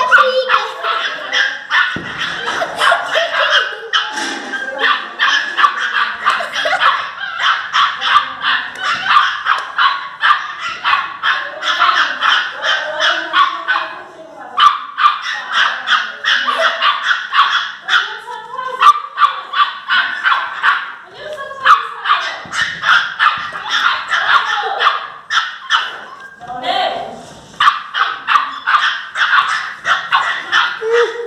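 Two pinschers, a puppy and a larger dog, barking and yapping angrily at each other in rapid, overlapping volleys, with a brief lull about halfway through.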